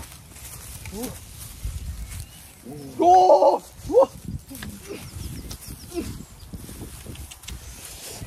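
Loud, short vocal exclamations from a young man about three to four seconds in, with a few quieter calls before and after.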